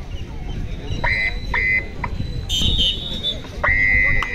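Whistle blasts over crowd noise: two short blasts about a second in, a short higher-pitched one a little past halfway, and a longer blast starting near the end.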